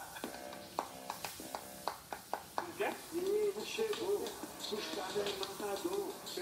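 A run of sharp clicks, several a second, in the first half, then a voice singing without clear words from about three seconds in, over music.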